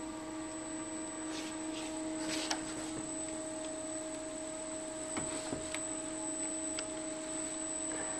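Aristo-Craft E8/E9 large-scale model locomotives running on track: a steady electric motor and gear hum with a few faint clicks.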